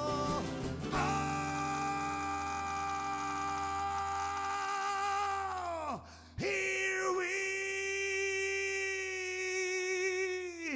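A male voice holds two long wordless sung notes, about five seconds each, and each ends in a downward slide. Acoustic guitars play underneath.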